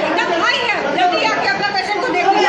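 Several people talking at once, their voices overlapping in a continuous chatter.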